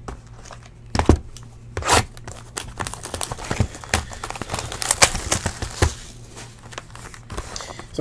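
Clear plastic shrink-wrap being torn and peeled off a trading-card hobby box: irregular crinkling and crackling, with sharp snaps about one and two seconds in.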